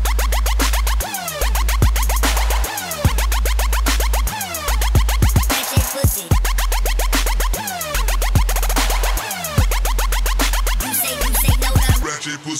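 Electronic bass music from a DJ mix: a heavy, sustained sub-bass that drops out briefly several times under a fast, dense beat, layered with rapid falling pitch sweeps.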